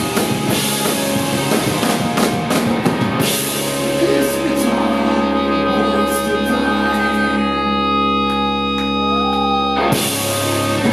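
Live punk rock band with electric guitars and drum kit playing. About three seconds in, the steady drumming stops and the guitars hold a long ringing chord under scattered cymbal hits, with a rising whine near the end, before the sound cuts off: the close of the song.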